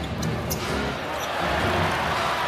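Basketball bouncing on a hardwood arena floor while a player dribbles up the court, heard as a few sharp short bounces over steady arena crowd noise. The crowd noise grows louder in the second half.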